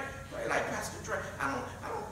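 A man's voice preaching into a microphone, a few syllables a second with the room's echo.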